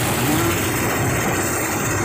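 Engine-driven rice thresher running steadily as rice stalks are fed into its drum, a dense, even machine noise.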